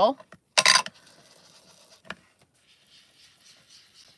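A short, loud scuffing noise about half a second in, then faint, soft rubbing of a domed-top foam ink blending tool being inked on the pad and swept across cardstock.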